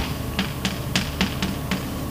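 Chalk writing on a blackboard: a string of short, sharp taps, about seven in two seconds, as the chalk strikes and lifts off the board.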